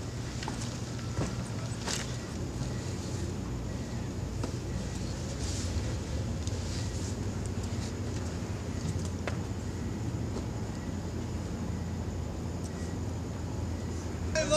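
A steady low mechanical hum, like a running engine, with a few faint knocks and scuffs.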